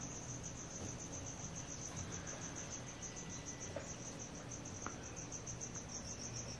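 A faint, steady, high-pitched trill of rapid, even pulses over low room noise, with a couple of faint clicks a little past the middle.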